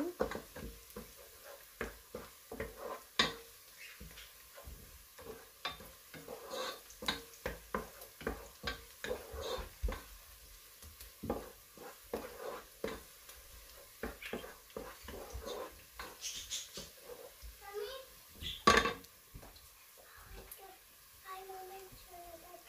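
Wooden spatula stirring chopped onion and garlic in a nonstick pot, knocking and scraping irregularly against the pan, one knock near the end louder than the rest. Under it a light sizzle of the onion and garlic frying in oil as they soften towards light brown.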